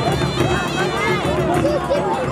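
Large crowd, many voices talking and calling over one another, with traditional drums and brass horns playing underneath.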